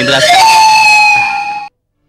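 Background score music: a held high note that slides up briefly and then holds over the accompaniment, cutting off suddenly about 1.7 seconds in, followed by a short silence.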